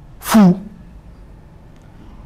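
A man sneezing once: a sharp burst falling quickly in pitch, about half a second long.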